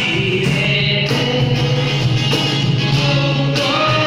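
Live acoustic band: a male vocalist sings a held melody into a microphone, accompanied by acoustic guitar and cajon.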